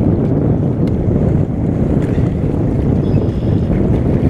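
Steady wind buffeting the microphone, with waves washing against the rocky shoreline underneath.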